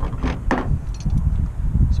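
Wind buffeting the microphone throughout, with about three short metallic clicks in the first half second as the metal flaring tool is handled.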